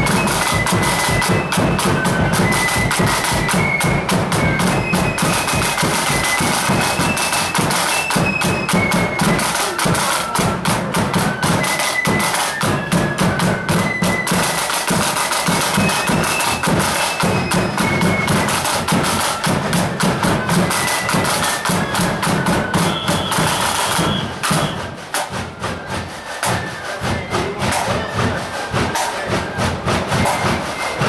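Marching flute band playing: flutes carry a high melody over side drums and a bass drum beating a march rhythm. The music quietens and thins for the last few seconds.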